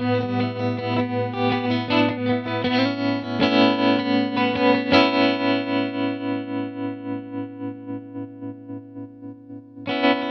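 Electric guitar played through a Maestro Mariner Tremolo pedal, its chords chopped into steady, even pulses of volume. The last chord, struck about five seconds in, is left to ring and fades away while it keeps pulsing.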